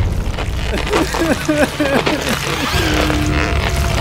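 A rapid run of short, high-pitched vocal giggles, about five a second, followed by one held note, over a low rumble and music.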